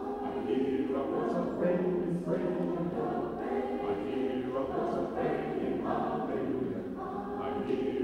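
Choir singing a spiritual in short phrases, with a new phrase starting about every second.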